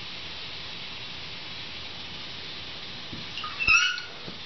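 Young caiman giving one short, high-pitched chirp near the end, with a knock at the same moment; before it only a steady hiss.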